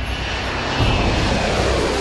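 Jet airliner engines at takeoff thrust as the plane climbs away: a loud, steady rushing roar that swells about a second in.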